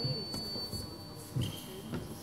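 An electric fencing scoring machine's steady high beep signalling a touch, cutting off about a second in. A thump and a second, shorter and slightly lower beep follow near the end, over faint voices in the hall.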